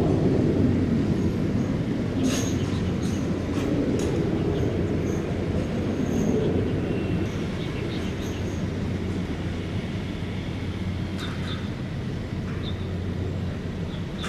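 A Mirage 2000 fighter's single jet engine rumbling as it goes away after a low pass, the deep roar slowly dying down. A few faint clicks sound a couple of seconds in and again near the end.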